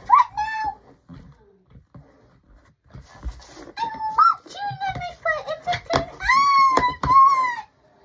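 A child's high-pitched voice making drawn-out wordless squeals and whines, with a few light knocks in between.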